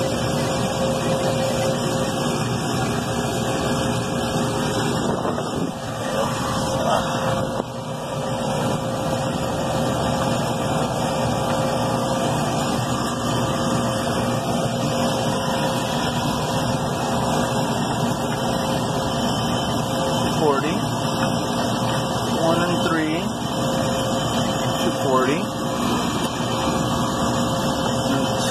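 Steady mechanical hum with a few fixed tones, from running refrigeration equipment on the site, with faint, indistinct voice-like sounds in the last third.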